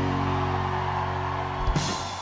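Live rock band's final chord ringing out on guitars and keyboard and slowly fading, with a last drum and cymbal hit near the end.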